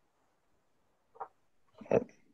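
Near silence on a video-call audio feed, broken by a short faint sound about a second in and a brief voice sound near the end, just before a member speaks.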